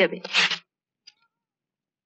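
A voice finishing a line of dialogue in the first half-second, then near silence with one faint click.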